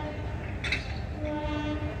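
Indian Railways electric locomotive horn giving a short blast in the second half, over a steady low rumble, with a brief hiss shortly before the blast.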